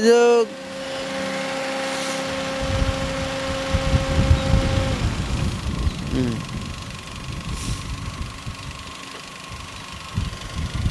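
Honda Amaze's 1.2-litre four-cylinder petrol-CNG engine idling quietly, with a steady hum from the air-conditioning fan that stops about five seconds in when the AC is switched off. Irregular low rumbling on the microphone from about the middle on.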